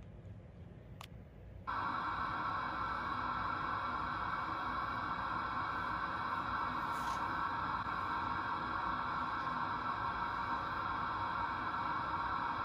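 A single click, then about two seconds in a steady hiss of television static cuts in and holds.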